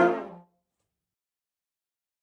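School concert band of brass and woodwinds holding its final chord, which dies away within about half a second, followed by dead silence.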